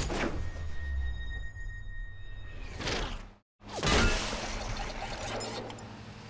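Cartoon sound effects of a glue-bullet capsule fired and flying: a low rumble with a thin steady ringing tone, a whoosh near three seconds, a sudden brief dropout, then another whoosh with clatter about four seconds in. Background music runs underneath.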